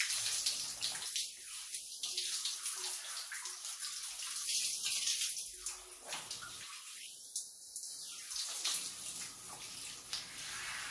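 Water spraying from a handheld shower head onto skin and hair in a tiled shower, the splashing changing in strength as the spray is moved over the body.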